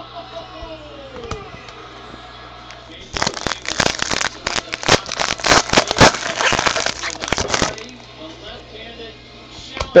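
Crinkling and tearing of a Panini Prizm card pack wrapper, a dense crackle lasting about four and a half seconds that starts about three seconds in.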